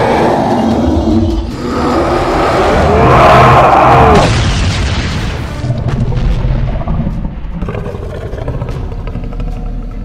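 Cartoon fight sound effects: heavy booms and crashing over background music, loudest about three to four seconds in and thinning out over the last few seconds.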